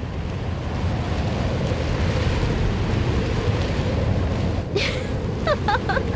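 Strong wind blowing across the microphone, a steady loud low rumble with hiss above it.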